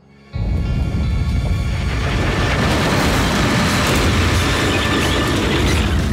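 Cartoon sound effect of a tunneling machine breaking up through the ground: a loud, steady rumbling noise that starts suddenly just after the start, with background music under it.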